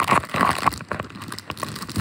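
Plastic popcorn bag crinkling as it is handled, a dense crackle in the first half that thins to scattered crackles.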